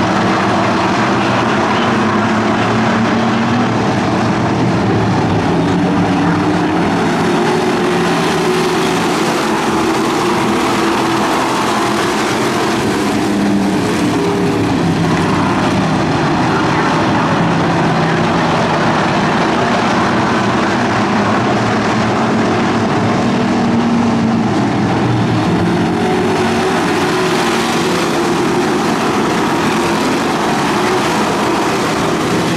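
A pack of street stock race cars running laps on a dirt oval, many engines sounding at once, their pitches rising and falling as the cars go through the turns.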